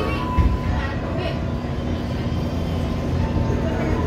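Inside a Tokyo Metro 05 series electric commuter train pulling slowly out of a station: a steady low running rumble with a constant low hum.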